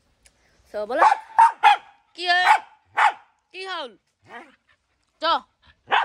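A small dog barking and yelping, a quick run of short, high calls that start about a second in and come every half second or so.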